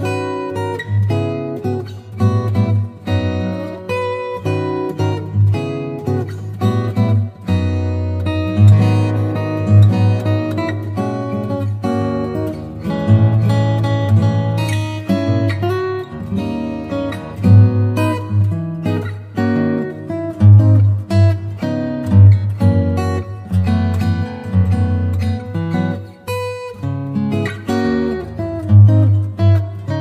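Background music led by acoustic guitar, plucked and strummed, over a low bass line.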